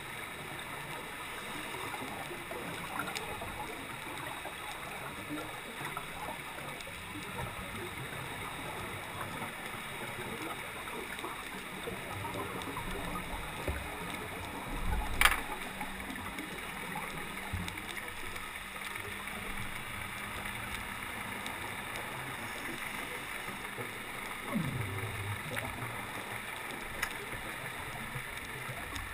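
Steady underwater noise heard from a diver's camera. About halfway through comes a louder burst of a scuba diver's exhaled regulator bubbles, with one sharp click.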